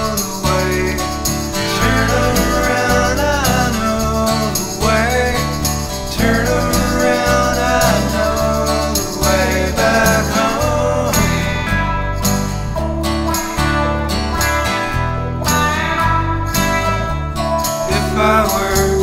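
Instrumental break in a country-rock song: a lead guitar plays a melody with bending, sliding notes over bass and drums.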